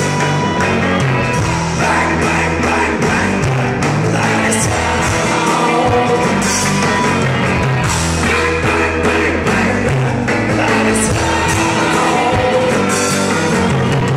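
Live blues-rock band playing loud and steady: a male singer over harmonica, electric guitar, bass and drums.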